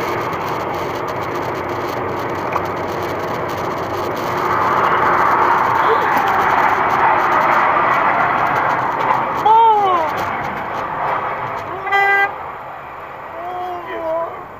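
Steady road and engine noise heard from inside a car as it slows, swelling in the middle; a person cries out briefly near ten seconds in, and a car horn gives one short honk about twelve seconds in.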